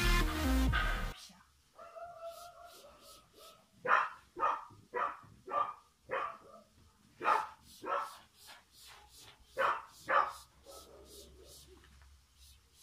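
Background music cuts off about a second in. A dog then barks in short, sharp barks about half a second apart: five, a pause, three more, then two.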